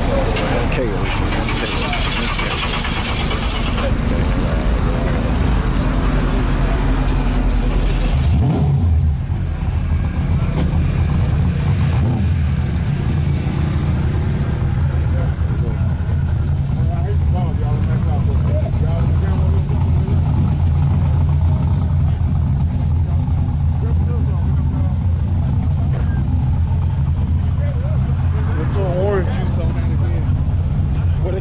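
Drag race car engine idling, a steady low rumble that takes over about eight seconds in. Before that there is a hiss, strongest in the first few seconds, over a deep rumble.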